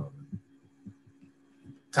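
A pause in speech over a call microphone: a faint steady low hum with a few soft, low thumps spread through it.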